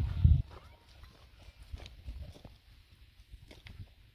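A low wind rumble on the microphone for the first half second, then faint scattered clicks and rustles.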